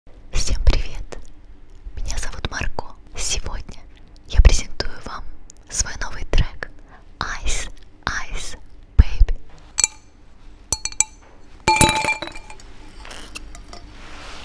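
A woman whispering close into a studio microphone, ASMR-style, in short breathy phrases. About ten seconds in, several sharp clinks of glass with a short bright ring.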